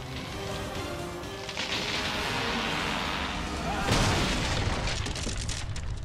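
Dramatic music over a rushing noise of surf and spray that grows about one and a half seconds in, with a loud crash about four seconds in as the catamaran's mast comes down; everything cuts off abruptly at the end.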